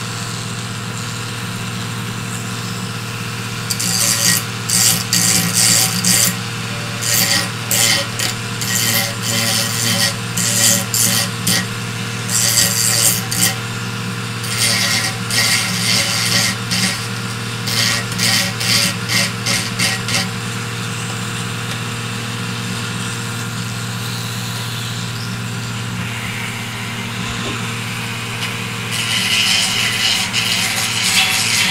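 Flexible-shaft rotary tool running with a steady hum, its bit grinding into 3D-printed plastic in repeated short bursts from a few seconds in until about two thirds through, then running free, with grinding starting again near the end.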